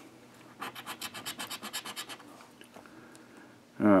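Scratch-off lottery ticket being scratched, the coating rubbed off the symbols in a quick run of short strokes, roughly nine a second, for about a second and a half, then fainter scraping.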